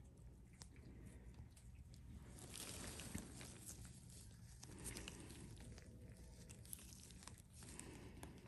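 Near silence, with faint rustling and a few small clicks as gloved fingers press the skin and handle gauze.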